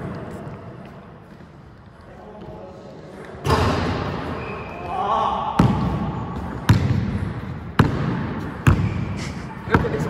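A basketball dribbled on a wooden sports-hall court, starting a few seconds in and going about once a second, each bounce echoing in the hall.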